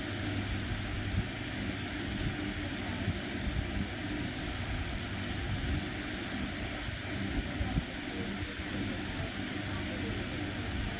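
A steady low mechanical hum, like a motor or engine running, holds at an even level throughout.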